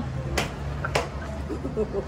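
A spatula scraping and knocking against a stone mortar as lotek is mixed in it, with two sharp knocks about half a second and a second in.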